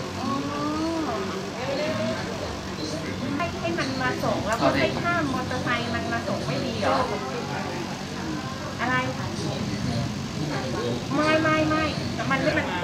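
Several adults talking together in conversation.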